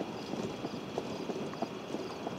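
Horse-drawn buggy on a gravel road: the horse's hooves clip-clop in an even rhythm of about three hoof-falls a second, over a steady rolling crunch of the wheels on gravel.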